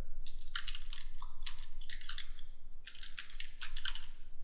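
Typing on a computer keyboard: a quick run of keystrokes, with a short pause about three seconds in.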